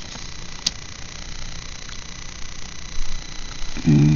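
A steady low background hum, with one sharp click about two-thirds of a second in. A short vocal sound starts just before the end.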